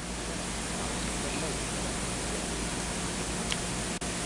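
Steady hiss with a low, even hum underneath: the noise floor of an old tape transfer, heard in a pause in the narration.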